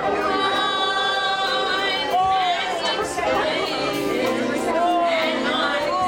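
A church praise team and congregation singing a gospel song together, several voices holding and sliding between notes, with people talking underneath the singing.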